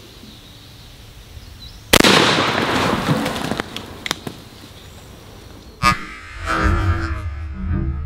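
A 12-gauge shotgun fires a buckshot load once, about two seconds in, and the report echoes away over about a second. A second sharp bang comes near six seconds, and background music follows.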